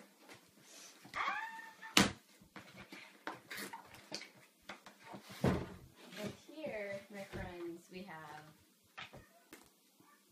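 Cardboard shipping box being handled and pulled open, with two sharp knocks, the louder about two seconds in and another about halfway through, mixed with a woman's wordless, excited vocal sounds.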